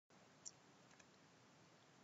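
Near silence: faint room tone, with one short faint click about half a second in.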